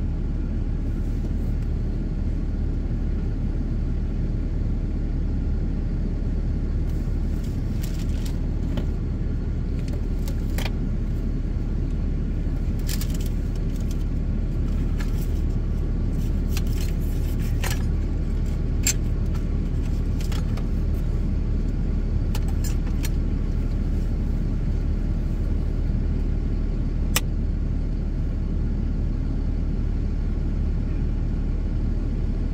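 Vehicle engine idling steadily while stopped, a low even sound, with a few faint clicks scattered through.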